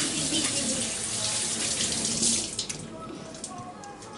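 Water running from a kitchen tap into the sink, a steady hiss that is turned off about two and a half seconds in.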